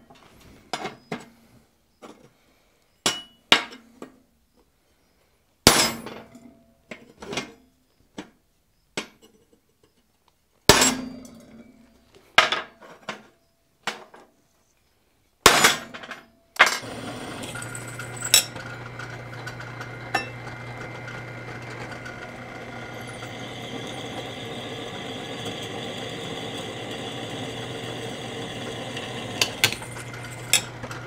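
Hand hammer striking the square iron bars of a half-lap frame: a series of sharp, ringing blows at irregular spacing, a few much heavier than the rest. About halfway through a drill press starts and runs steadily with a low hum while a twist drill bores through a bar.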